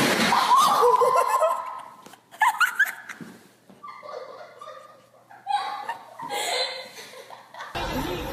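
A person laughing in several separate bursts, loudest at the start.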